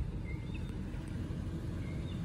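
2014 Toyota Camry LE's four-cylinder engine idling, heard from the driver's seat as a steady low rumble.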